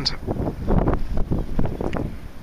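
Wind buffeting the microphone in gusts, a loud low rumble.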